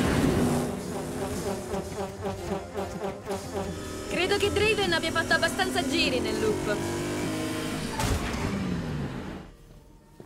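Cartoon soundtrack: background music with a car engine running under it. A high, wavering voice-like sound rises over it about four seconds in, and everything drops away near the end.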